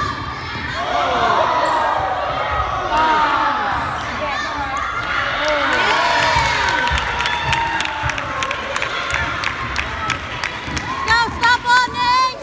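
Spectators shouting and cheering over one another in a gym, with a basketball bouncing on the hardwood court. Near the end come several short, high squeaks, in quick succession.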